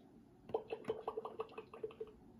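Fisher-Price Laugh & Learn toy teapot's speaker playing a short electronic sound effect: a quick run of faint pops, about seven a second, starting about half a second in.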